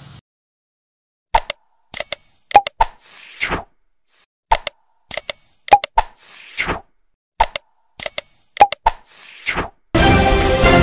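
Sound effects of an animated subscribe button: sharp clicks, a pop, a bright bell-like ding and a short whoosh. The set starts about a second in and repeats three times, about every three seconds.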